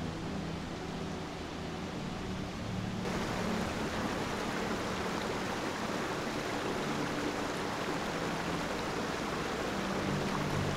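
Steady rush of running water from a creek, getting louder about three seconds in.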